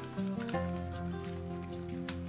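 Background music with steady held notes, over dry crackling and crinkling of paper as a rosy-faced lovebird tears and chews a paper strip.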